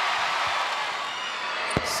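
Steady arena crowd noise, with a single sharp thud of a basketball hitting the hardwood court near the end and a fainter bounce about half a second in.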